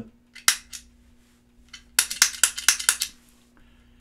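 Mechanical footswitch of a Haunted Labs Old Ruin distortion pedal clicking as it is pressed by hand: a couple of clicks in the first second, then a quick run of about eight clicks around the middle. The switch clicks audibly in the room, though the click does not go through the guitar signal.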